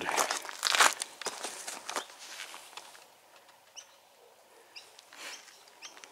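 Footsteps on paving stones and rustling handling noise from a handheld camera, loudest in the first two seconds, then fainter with a few light ticks.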